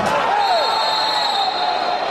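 Referee's whistle blown once, a steady high tone lasting about a second, over the voices and noise of a futsal arena crowd.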